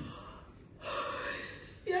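A woman's sharp, sobbing intake of breath while crying, lasting about a second, just before she speaks.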